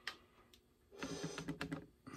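Light clicks and taps of a paintbrush being rinsed out in a water container: one click at the start, then a quick run of small taps in the second half.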